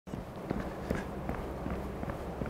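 Footsteps of three people walking in tennis shoes on an indoor tennis court: soft, overlapping steps, several a second, over a low steady room hum.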